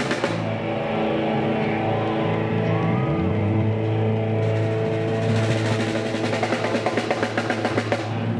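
Street band playing amplified rock music live: electric guitars and bass over a drum kit. Guitar chords and a bass note are held, and the drums and cymbals come in busily about halfway through.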